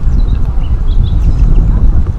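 Wind buffeting an action camera's microphone: a loud, steady low rumble.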